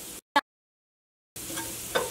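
Faint sizzle of garlic frying in oil that cuts to dead silence for about a second, broken only by a very short clipped scrap of voice; the faint sizzle returns in the last half second.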